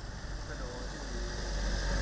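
Small light-duty truck approaching along a concrete road, its engine and tyre rumble growing steadily louder, then cut off suddenly.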